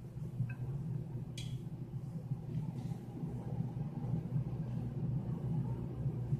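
Cooked spaghetti being served onto a plate with kitchen tongs: a light click of the tongs about one and a half seconds in and a smaller tick before it, over a steady low rumbling hum.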